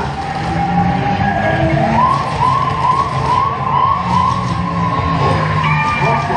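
Dark-ride soundtrack and effects: a held electronic tone, then, about two seconds in, a siren-like warbling tone repeating about two and a half times a second, over a low steady music bed.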